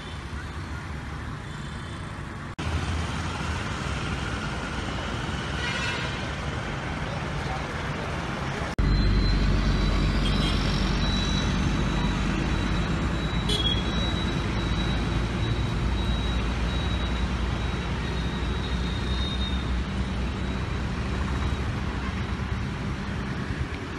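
Outdoor street ambience: a steady low rumble of road traffic. It changes abruptly about two and a half seconds in and again about nine seconds in, and is louder after the second change. A thin high steady tone runs through the middle of the stretch.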